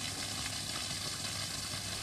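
Steady hiss with a faint low hum under it, unchanging throughout.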